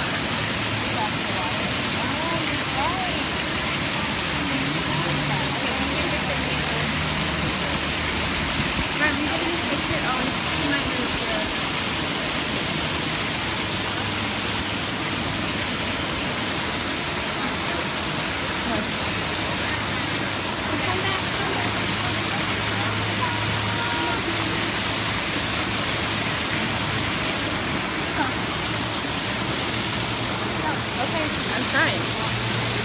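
Waterfall pouring into a pool, a steady rushing splash, with people's voices murmuring behind it.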